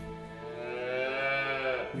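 A calf bawls once, one long call of about a second and a half that rises and then dips slightly in pitch, over soft sustained background music.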